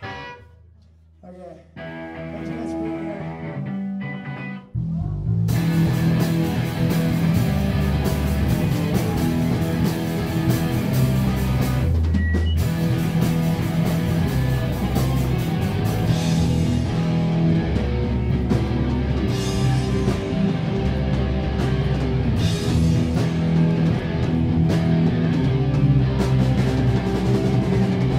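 A live rock band playing a cover song. It opens with a few seconds of guitar, then the full band with guitars, bass and drums comes in loud at about five seconds and keeps going.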